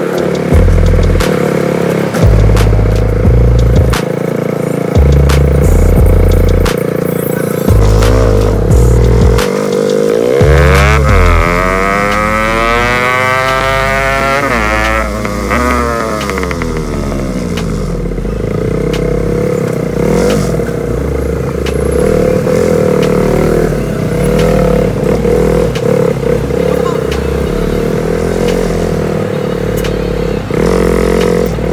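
Motorcycle engine running while riding in city traffic, with a low rumble that comes and goes through the first ten seconds. From about ten to sixteen seconds in, a large vehicle passes close alongside and its sound sweeps up and back down.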